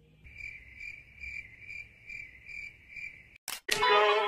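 Cricket chirping: a high trill pulsing about three times a second, which stops abruptly near the end. A click follows, then guitar music starts.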